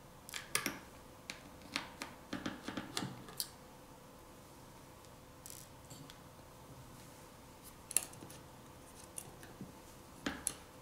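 Small clicks and taps of a precision Phillips screwdriver and tiny screws against the phone's metal frame and shields as the screws over the volume-key connector cover are removed. A quick cluster of ticks comes in the first three and a half seconds, then a few scattered clicks near the end.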